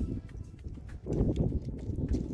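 A small plastic toy figure knocking and rubbing against a weathered wooden post as it is moved up the post, with wind rumbling on the microphone.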